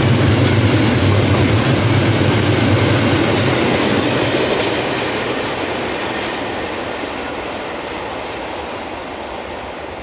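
Freight train of four-axle cement silo wagons rolling past: a steady, loud rumble with wheel clatter. The sound fades steadily from about four seconds in as the end of the train passes and moves away.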